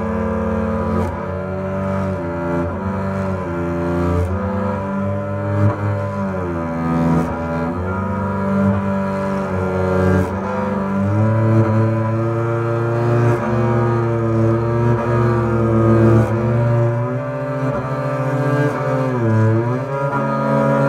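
Solo double bass played arco, with the bow: long sustained notes, often more than one sounding at once, with a few sliding swoops in pitch.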